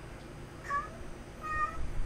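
A domestic cat crying: two short meows, the second following the first by under a second.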